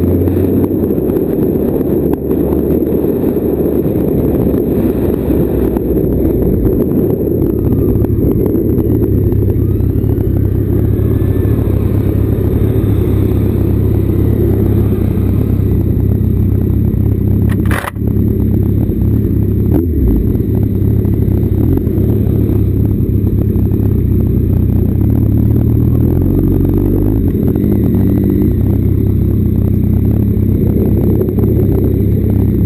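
Suzuki sports bike's engine running at low road speed, with heavy wind and road rumble on the bike-mounted camera's microphone, as the bike slows to a crawl. A short click cuts across it about eighteen seconds in.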